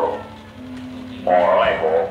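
A dalang's voice in a wayang kulit performance: a drawn-out, gliding vocal cry in a character voice about a second and a quarter in, after a quieter moment that carries a low held note.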